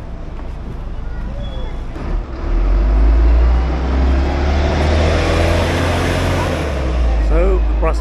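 Articulated city bus pulling away from the stop: its engine rumble swells about two seconds in and climbs in pitch as it accelerates, with a rush of road and engine noise at its peak.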